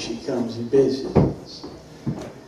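A man speaking into a microphone, with one dull thump about a second in.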